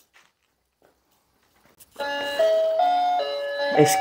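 After about two seconds of near silence, a child's electronic toy starts playing a simple beeping tune, one plain note after another.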